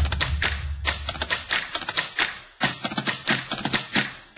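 Typewriter keys clacking in quick, irregular runs, with a short break about two and a half seconds in, over a low rumble that fades out in the first second or so.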